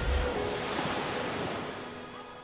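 Rushing sea-wave wash, as of a wave breaking along a sailing yacht's hull, swelling after the intro music's last beat and slowly dying away, with faint held music notes underneath.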